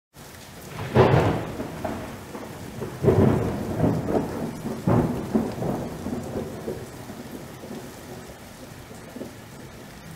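Intro sound effect of rumbling, crackling noise that surges loudly about one, three and five seconds in, then gradually dies away.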